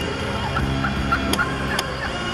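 Wild turkeys calling: a run of about five short notes starting about half a second in, over a steady low hum.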